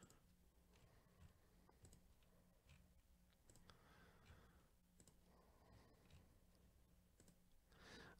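Near silence with faint, scattered computer mouse clicks.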